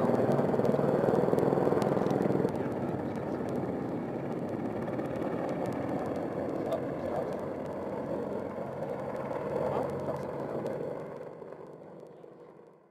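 AH-64 Apache twin-turboshaft attack helicopter running in flight, a steady engine and rotor noise. It drops a little in level about two and a half seconds in and fades out near the end.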